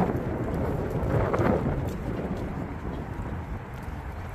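Wind buffeting the microphone as a low, noisy rumble that gradually dies down.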